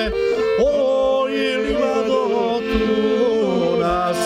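Men singing a Serbian folk song in long, wavering held notes, accompanied by a piano accordion whose bass notes keep a steady beat.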